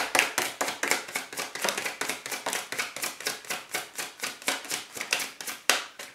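A deck of tarot cards being shuffled by hand: a fast, even run of card slaps about six a second, ending with one louder slap near the end.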